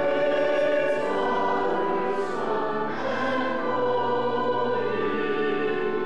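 Congregation singing a hymn together with instrumental accompaniment, sustained notes held at a steady level.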